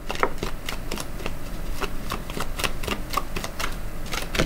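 A deck of tarot cards being shuffled in the hands: a quick, irregular run of light card clicks and flicks.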